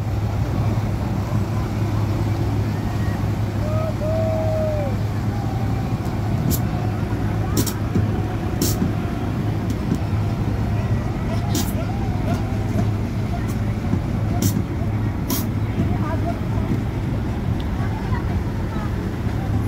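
Motor yacht under way: a steady low engine drone with water rushing along the hull and wind noise.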